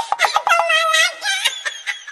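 Comedy sound effect: a quick run of clicks, then a high, wavering, voice-like tone for about a second that fades out.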